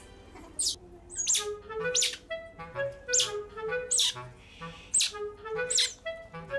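Otter pup giving sharp, high-pitched squeaks about once a second, over light background music with a gentle melody.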